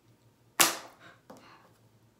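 A single sharp clack just after half a second in, then two softer knocks: a small object being handled against a hard countertop.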